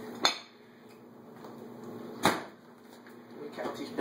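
Two sharp kitchenware knocks, about two seconds apart, over a faint steady hum.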